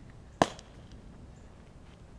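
Baseball smacking into a leather glove: one sharp pop about half a second in.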